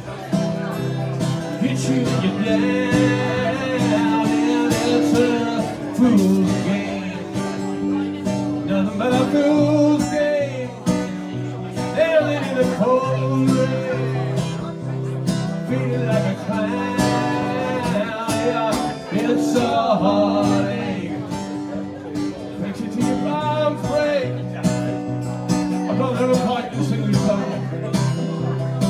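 Acoustic guitars strummed in a live duo performance, with a man singing the lead line over the chords.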